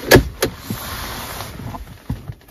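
Plastic cover of a car's centre-console storage bin being moved by hand: a sharp, loud click just after the start and a second click about half a second later, followed by a few faint knocks.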